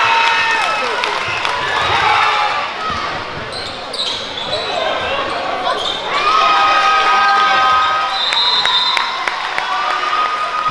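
Basketball game in a gym: a ball bouncing on the court amid spectators' voices and sustained shouts, echoing in the hall.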